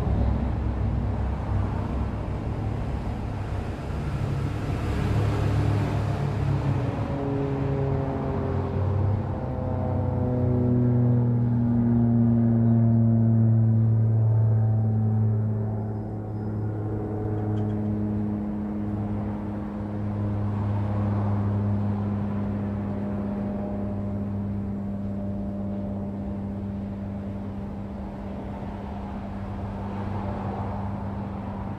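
A low engine drone whose pitch falls slowly over about ten seconds, then holds as a steady hum.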